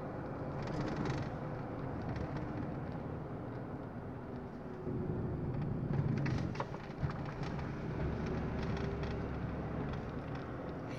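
Car engine and road noise heard from inside the cabin of a moving car: a steady low rumble, with a couple of faint clicks about two thirds of the way in.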